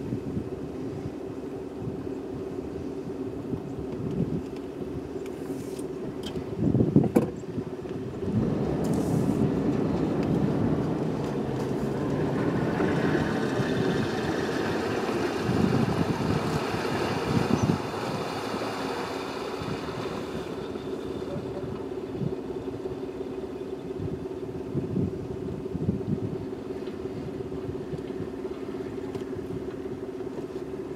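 Safari vehicle engines idling steadily, with another game-drive vehicle driving up close and growing louder for several seconds in the middle. A brief thump about seven seconds in.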